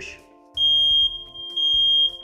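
A smoke alarm sounding its high-pitched test alarm, set off by pushing its test button with a pole tester. The steady tone starts about half a second in and comes on strongest twice.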